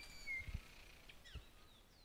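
Small birds chirping with short, high whistled calls, fading out, with two brief low thumps.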